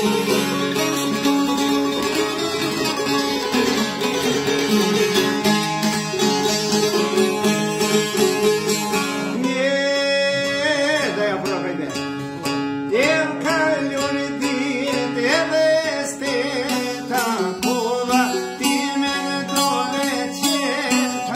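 Two long-necked folk lutes plucked together in a quick, dense Albanian folk tune. About halfway through, a man's voice comes in singing a melismatic, ornamented line over the strings.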